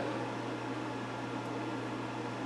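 Steady low hum with an even hiss underneath, the room's background noise with no note played.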